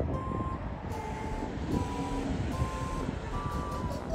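A vehicle's reversing alarm: about five short beeps at slightly different pitches, roughly one every second, over the low rumble of an engine.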